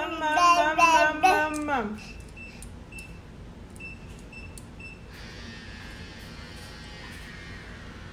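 A woman's voice, drawn out and pitched like singing, for about two seconds. Then a few short, faint high notes and soft background music.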